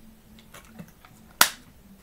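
A person drinking water from a plastic bottle: faint small sounds of swallowing, then a single sharp click about one and a half seconds in as the bottle comes away.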